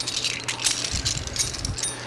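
Light metallic clinking and rattling as stainless steel fittings of an emergency product removal valve are handled: a quick run of small clicks that dies away near the end.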